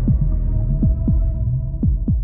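Horror trailer sound design: deep, falling bass thumps in heartbeat-like pairs, about one pair a second, over a steady humming drone.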